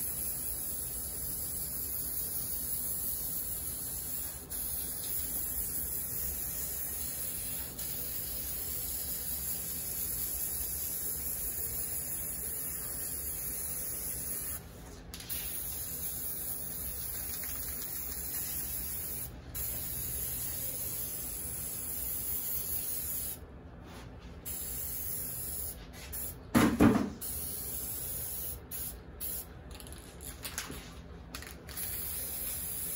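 Aerosol spray paint can hissing in long, steady bursts as black paint is sprayed over a canvas, with a few short pauses; near the end the spraying breaks into shorter bursts. A single loud thump comes near the end.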